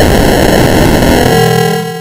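Heavily distorted, effects-processed logo jingle audio: a loud, harsh wall of noise with steady high tones over it. It eases off slightly near the end as a few lower tones come through.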